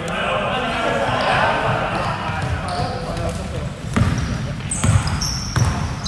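Basketball dribbled on a hardwood gym floor, with a few bounces in the last two seconds. Short, high-pitched sneaker squeaks come in among the bounces.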